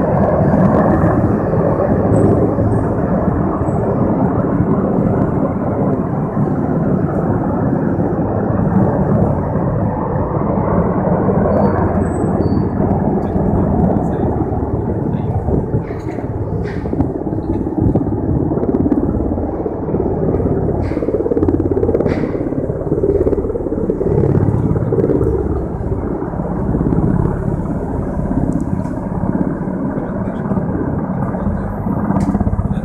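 Several formations of military helicopters flying past overhead: a loud, steady rotor and engine rumble.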